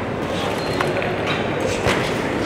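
Indoor crowd chatter and noise around a boxing ring, with a few sharp smacks of gloved punches landing, the loudest one near the end.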